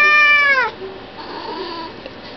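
Birman cat meowing: the end of one long, drawn-out meow that falls in pitch and stops under a second in, followed by a fainter, shorter call.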